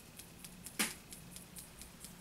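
Faint light ticks and one brief rustle about a second in: small handling sounds of a hand-held enamel-coated copper dish and plastic sifter cup.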